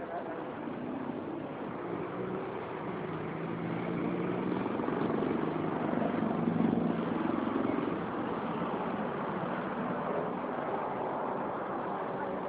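City street traffic: a motor vehicle's engine hum over general road noise, growing louder through the middle and easing off again.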